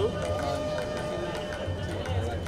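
Overlapping voices of a crowd of photographers and onlookers calling out, over background music.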